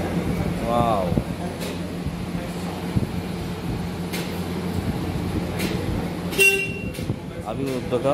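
A steady low hum with background voices, and about six and a half seconds in a short, sharp horn toot.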